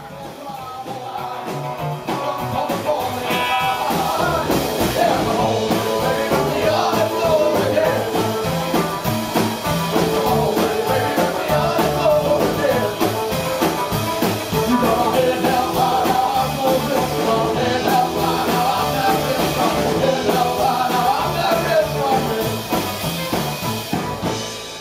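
Live rockabilly band playing: upright bass, electric guitars and drum kit, with a man singing. The music swells over the first couple of seconds.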